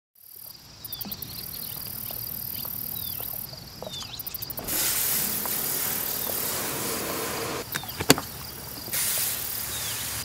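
Crickets trilling with a few short falling chirps. From about five seconds in, a pressure washer sprays water with a steady hiss, and there is one sharp knock near eight seconds.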